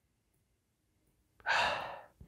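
A single audible breath through the nose as a man sniffs the aroma of a glass of beer held to his face. It comes suddenly about one and a half seconds in, after near silence, as a short hiss that fades within half a second.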